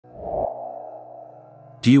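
Synthesized intro sound effect: a short low boom followed by a steady, ringing tone that slowly fades. A narrator's voice begins near the end.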